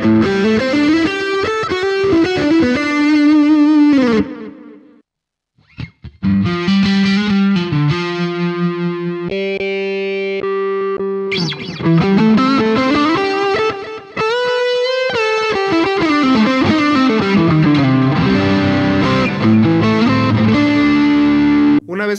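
Electric guitar (Fender Stratocaster) played through a Boss ME-90 multi-effects pedalboard with overdrive and modulation: a lead line on the ME-90's Phase Lead patch, then, after the sound drops out for about a second some five seconds in, held notes and bending lead phrases on its Latin Lead patch.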